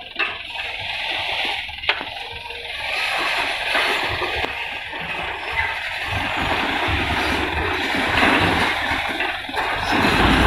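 Loose fill soil and stones sliding and pouring out of a tipped Mitsubishi Fuso Canter dump truck bed, a steady rushing hiss, with a single knock about two seconds in. The truck's engine grows louder underneath in the second half as the truck creeps forward while dumping.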